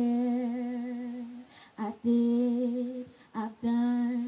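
A young woman singing solo and unaccompanied into a handheld microphone, holding three long notes with a slight vibrato, each separated by a brief break.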